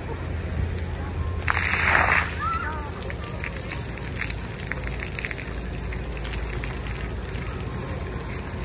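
Splash pad water jets spraying with a steady hiss, with a louder burst of spray lasting about half a second about one and a half seconds in.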